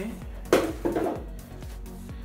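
A sharp knock and a second, smaller clatter about half a second in: a hard plastic engine part, likely the air-intake hose and filter-box lid, being handled and set down.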